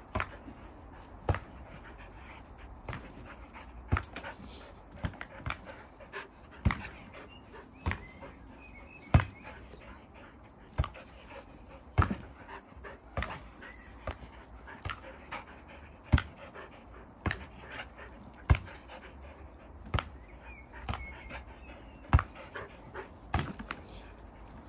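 Border collies panting hard while they play, with sharp irregular knocks, roughly one a second, as they strike the swingball's tethered ball.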